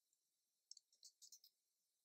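Near silence with a few faint computer keyboard keystrokes, a handful of short clicks in the middle.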